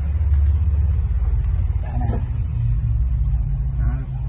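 Massey Ferguson 3065 tractor's diesel engine idling with a steady low rumble.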